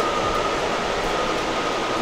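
Steady background noise of a working embroidery and print shop: a constant, even rush of machinery and air handling with no rhythm. A faint high whine fades out just after the start.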